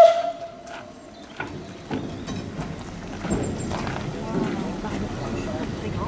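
A hand-pushed railway turntable slowly turning with a steam locomotive on it: a short squeal at the start, then a few light squeaks and clanks of its ironwork, with the voices of an onlooking crowd murmuring from about three seconds in.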